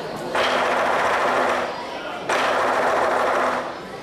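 Lion dance percussion playing two fast rolls of rapid strokes, each about a second and a half long, with a short break between them.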